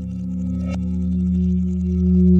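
Radiophonic ambient drone made from manipulated recordings of a metal lampshade: several steady, low ringing tones that slowly grow louder, with a single short tap about three quarters of a second in.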